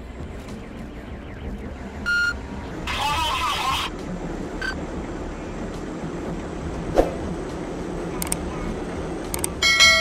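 Steady road and engine noise inside a police patrol car during a highway pursuit, broken by a short electronic beep about two seconds in, a second-long hiss with a wavering tone just after, and a sharp click about seven seconds in. Near the end a bright bell-like chime sounds.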